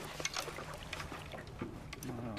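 Small waves lapping and sloshing against the side of a boat, with scattered small knocks and a faint steady low hum underneath.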